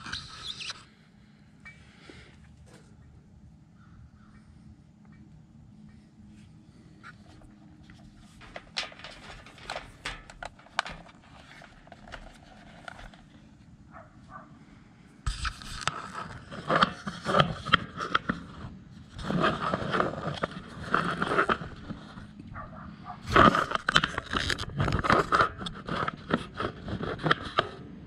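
Handling noise as the camera is picked up and set down again on the metal table. Loud, irregular scraping and rustling begins about halfway through; before that there is only a faint low steady hum with a few light clicks.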